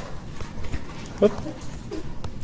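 Pen stylus tapping and scratching on a tablet screen while a word is handwritten: a quick, irregular run of light ticks. A brief voice sound comes about a second in and again near the end.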